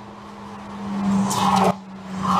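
Ferrari 296 GTB's twin-turbo V6 approaching at speed with tyre noise, its sound swelling over about a second. It cuts off abruptly near the end as another pass begins to build.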